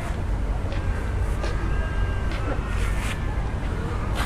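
A steady low outdoor rumble with a few faint clicks and, in the middle, faint thin high sounds in the distance.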